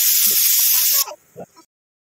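Pressure cooker venting steam through its weight valve, a loud steady hiss that cuts off suddenly about a second in. It is the cooker's release after pressure-cooking, the sign that the potato-and-pea curry inside is cooked.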